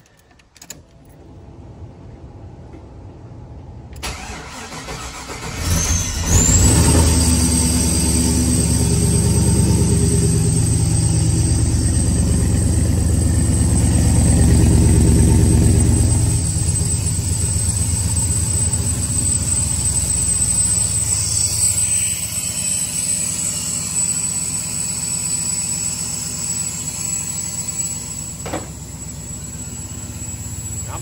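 Chevy Caprice Classic engine being started after storage: it cranks, catches about six seconds in and runs at a loud fast idle, then settles to a lower idle partway through. A steady high whine runs over the engine from the moment it catches, and a single knock comes near the end.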